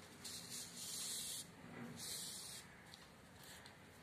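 Maize husk strips rustling as they are handled and wrapped by hand: two faint, brief rustles, the first longer, the second about two seconds in.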